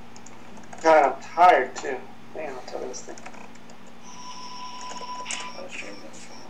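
Two short, loud sounds from a person's voice about a second in, followed by scattered clicks of a computer keyboard. A thin, steady high tone comes in about four seconds in.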